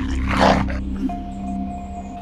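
A rough, snarling growl in the first half-second or so, as of a zombie feeding, over a low, steady, ominous music drone that carries on alone afterwards.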